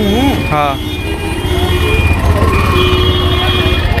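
City road traffic at a busy roadside: the engines of buses, cars and auto-rickshaws make a steady deep rumble. Voices come through briefly near the start.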